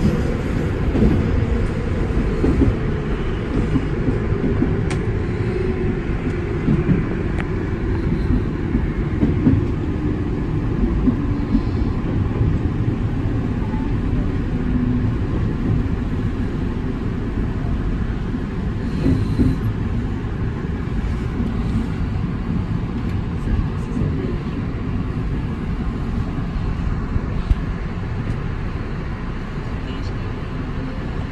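Tobu Skytree Line commuter train running, heard from inside the front car behind the driver's cab: a steady rumble of wheels on rail, with faint tones sliding under it and scattered short clicks and knocks.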